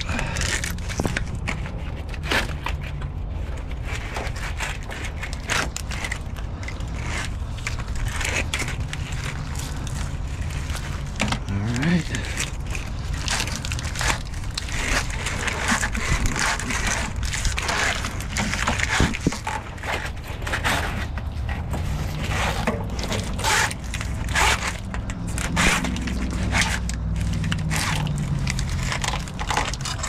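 Irregular crackling, crunching and scraping from an AC hose in corrugated plastic split-loom tubing being pulled and worked free by gloved hands, over a steady low rumble.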